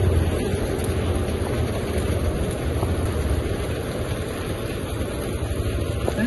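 Steady rush of rain and wind, with wind buffeting the microphone in a low rumble.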